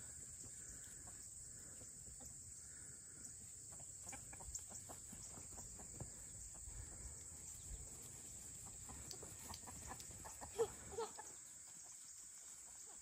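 Chickens clucking faintly, with two short louder calls near the end, over a steady high-pitched hiss.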